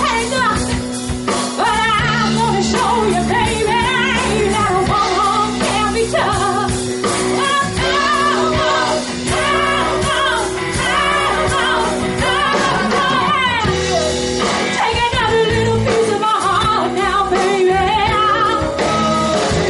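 Live cover band playing a song, with a woman singing the lead vocal into a microphone over the band.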